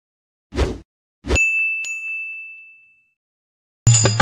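Subscribe-button animation sound effects: a short rush of noise, then a click and a bright bell ding that rings out and fades over about a second and a half. Music with singing cuts in just before the end.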